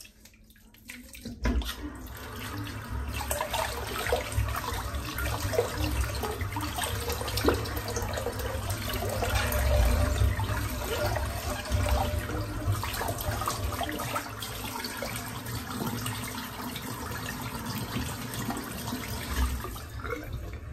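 Tap water running into a sink, starting about a second and a half in, with irregular splashing as shaving lather is rinsed off.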